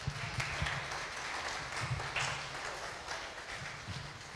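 A congregation applauding: many hands clapping together, thinning out toward the end.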